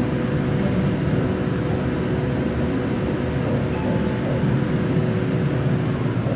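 Elevator cab ventilation fan running with a steady whir and a low steady hum. A short high electronic tone sounds about four seconds in.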